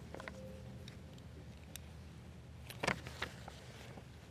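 Faint rustling and handling of papers and objects close to a lectern microphone, with a brief knock about three seconds in and a smaller one just after, over a steady low hum.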